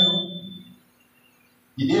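A man speaking into a microphone: his phrase trails off in the first half-second along with a thin high ringing tone, then a pause of about a second with only a faint low hum, and speech starts again near the end.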